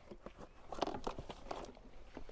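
Faint clicks, light knocks and rustling of plastic bottles and kit being shifted about in a plastic storage box, with a few sharper taps about halfway through.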